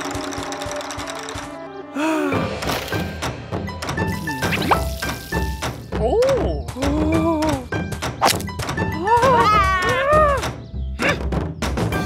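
Cartoon soundtrack: music with percussive knocks and hits, and a cartoon character's wordless voice sliding up and down in pitch about six seconds in and again around nine to ten seconds.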